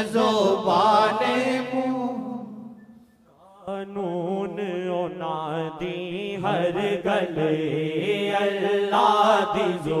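A Punjabi naat sung as devotional chant. A held sung line fades away about two seconds in, and after a brief near-silent pause the singing starts again about a second later.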